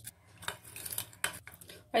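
Plastic spoon stirring liquid in a glass bowl, knocking lightly against the glass about four times, while sugar is stirred into vinegar and water to dissolve.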